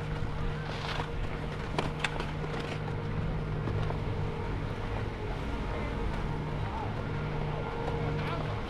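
Skis sliding over packed snow, with a steady low mechanical hum from the chairlift terminal close by and two sharp clicks about two seconds in.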